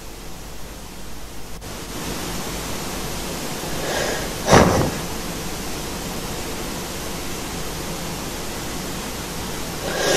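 Steady hiss of room noise, broken about four and a half seconds in by one loud, short breath from a person asleep under a duvet.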